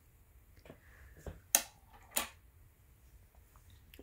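Hands handling and smoothing a piece of linen cross-stitch fabric: faint rustling with two short, sharp scratchy sounds about one and a half and two seconds in.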